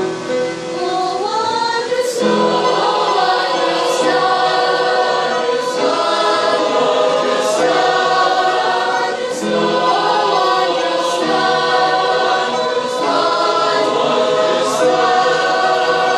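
A mixed church choir of young women and men singing a hymn together, loud and steady.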